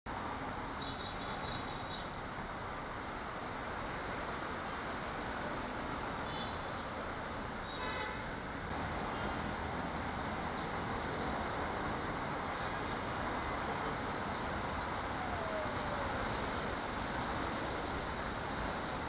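Steady city street traffic noise, an even rumble and hiss with no single vehicle standing out, and a few faint, short high chirps above it.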